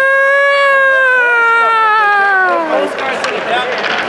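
A person imitating a siren with their voice: one long, high wail that swells slightly and then slides down in pitch before stopping about three seconds in.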